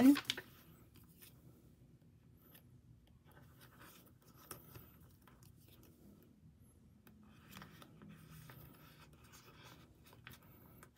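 Faint rustling and light scraping of photocards being slid into clear plastic binder-sleeve pockets, with small scattered clicks as the sleeve pages are handled.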